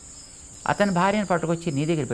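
Crickets chirping in a steady, unbroken high-pitched drone, with a man's voice starting about two-thirds of a second in.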